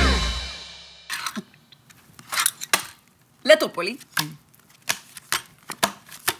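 Music fades out in the first second, then a series of sharp clicks and knocks: small wooden game pieces being picked up and set down on a wooden table. A short vocal sound comes about halfway through.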